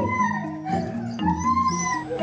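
A husky howling in several drawn-out calls, each rising and then falling in pitch, over background music with a stepping bass line.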